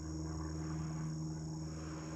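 Insects trilling steadily in a continuous high-pitched drone, over a low, steady hum.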